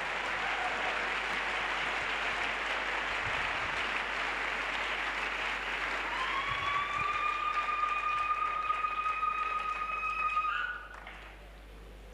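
A large congregation applauding in a steady clap offering. About six seconds in, a steady high whistling tone rises in over the clapping and holds for about four seconds. The applause and the tone stop together just before the end.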